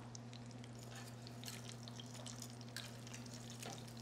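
Pork chops frying in oil in a stainless steel skillet: faint, scattered crackles and spatters over a steady low hum.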